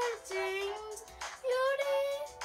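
A high voice singing a few held notes over music, with short breaks between them.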